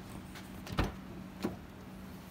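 Car door being opened: a solid clunk a little under a second in, then a lighter knock about half a second later.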